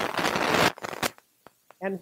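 Loud close-up rustling that cuts off suddenly less than a second in, followed by a few faint clicks and a short silence before a voice resumes.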